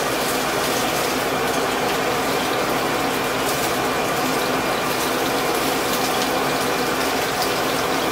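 Food frying in a pan: a steady, crackling sizzle.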